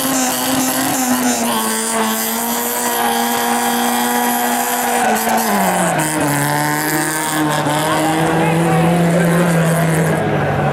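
Small hatchback rally car's engine held at high, steady revs, then the revs drop off about halfway through and settle at a lower steady note.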